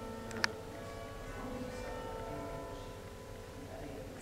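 Church tower bells sounding the clock's quarter chimes, struck on the fourth, fifth, sixth and ninth bells of the ring of ten, heard from inside the church as several steady bell tones hanging and slowly fading. A sharp click about half a second in.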